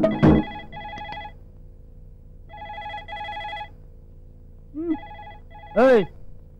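Telephone ringing in a double-ring pattern: three pairs of short electronic rings, each pair about two seconds after the last. A short voice cuts in near the end.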